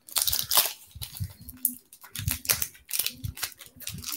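Irregular crinkling and rustling with sharp clicks from hands handling trading cards and their plastic wrapping or sleeves.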